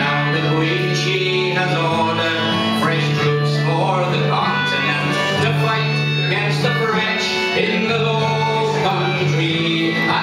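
Live folk song: voices singing to instrumental accompaniment, with sustained chords changing every second or two.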